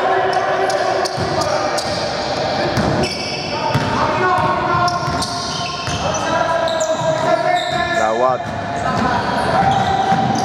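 A basketball being dribbled on a hardwood gym floor, with many short high sneaker squeaks as players move, in a reverberant hall.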